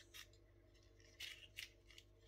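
Faint handling sounds of a small Imalent X-UL01 magnetic weapon mount being turned and flexed in the hand: a few short clicks and scrapes spread over two seconds.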